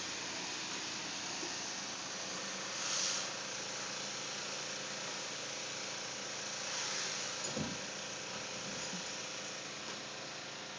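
Steady background hiss, with a brief swell about three seconds in and a faint soft knock past the middle.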